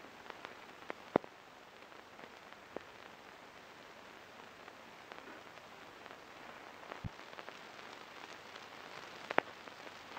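Steady hiss of an early-1930s optical film soundtrack, dotted with scattered clicks and pops, the loudest about a second in and another near the end. There is a low thump about seven seconds in.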